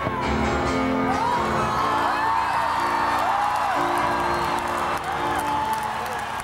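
Live concert music: held keyboard chords that change about every second, with audience whoops and whistles rising and falling over them.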